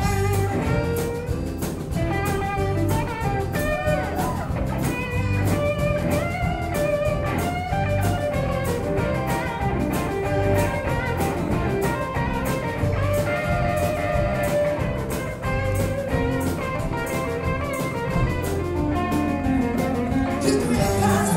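Live country band playing an instrumental passage: guitars over a pulsing bass line and a steady drum beat.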